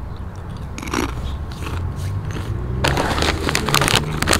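Crunching bites and chewing of crunchy Dorito-like tortilla chips close to the microphone, with a dense run of crunches in the last second.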